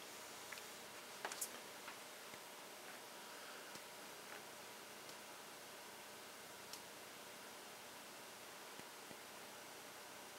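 Near silence: faint room tone, with a few faint clicks, one about a second in and another around seven seconds in.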